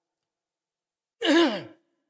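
An elderly man's single short sigh, falling in pitch, about a second in.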